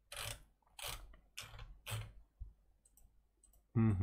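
Computer keyboard keys pressed one at a time: four sharp clicks about half a second apart, then a fainter one.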